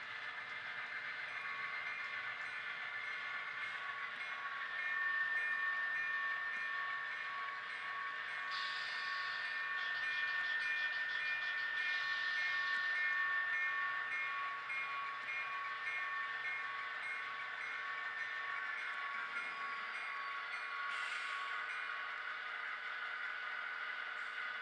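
Sound-equipped HO-scale model diesel locomotives running slowly through small onboard speakers, with the decoder's locomotive bell ringing in a steady repeated ding through most of it.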